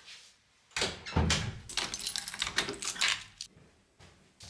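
A door being handled: a low thump about a second in, then a quick run of clicks and rattles from the latch and handle that dies away before the end.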